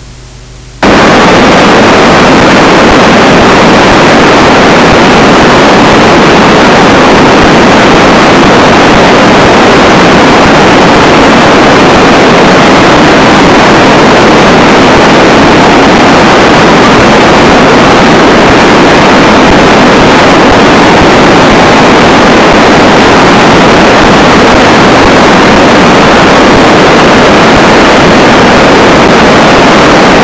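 Steady rushing of a river in flood, so loud that it overloads the microphone into a harsh, hissing noise. A brief quieter gap ends just under a second in.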